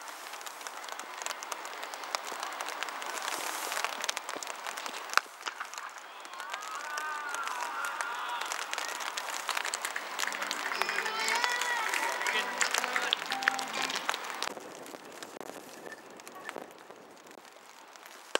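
Scattered clapping from players and spectators around a cricket field, with men's voices calling out, loudest in the middle seconds.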